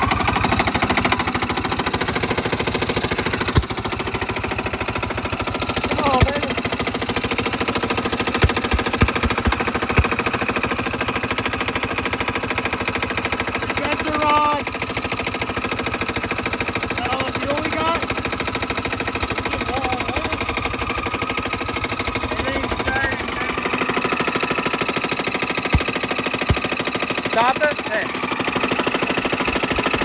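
Snorkeled riding lawn mower engine with a raised exhaust, running steadily with a fast, even beat just after starting, with a few sharp knocks in the first third. Its low rumble drops away about two-thirds of the way in, and short shouted voices come over it a few times.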